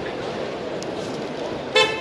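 Steady hubbub of a crowded exhibition hall, then, near the end, one brief, loud, high-pitched horn-like toot.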